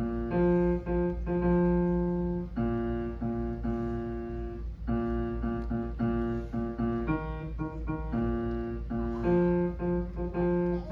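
Piano playing the bass part of a hymn on its own, so the basses can learn it before singing: a slow line of a few low notes, each held up to a couple of seconds, the same pitches coming back again and again.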